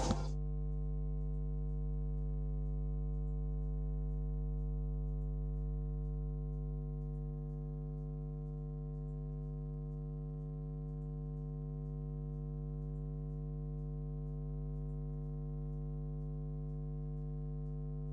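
A steady electronic hum: a low drone with a stack of higher tones above it, unchanging throughout, dropping slightly in level about seven seconds in.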